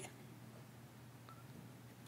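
Near silence: room tone, with one faint, very short tone a little past the middle.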